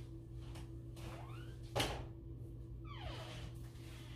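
A door being handled: a sharp knock a little under two seconds in, with faint creaking glides just before and after it, over a steady hum.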